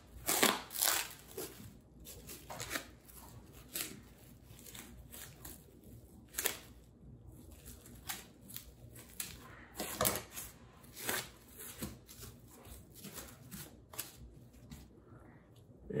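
Plastic cling film crinkling and crackling in irregular rustles as it is slit with a knife and peeled off a wrapped raw pork roll, with a few sharper crackles about six and ten seconds in.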